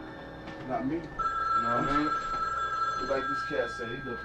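Indistinct voices talking, with a steady high electronic tone coming in about a second in and holding for a couple of seconds.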